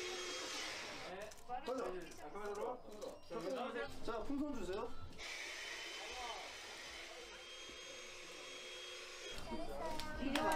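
Faint voices talking for the first half, then a steady whooshing hiss, like a fan or blower, for about four seconds.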